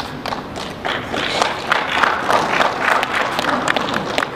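Spectators clapping and calling out encouragement during a grappling match. The clapping and shouting swell about a second in.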